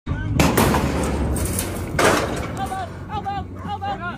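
Loud clanging and clattering of a steel rodeo bucking chute as a bull bursts out of it, with two heavy crashes about a second and a half apart. Short high-pitched calls follow in the last second and a half.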